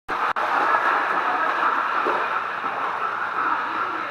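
Pool water splashing and rushing around a dog's legs as it wades through the shallows, a steady wash of water noise with a brief dropout just after it starts.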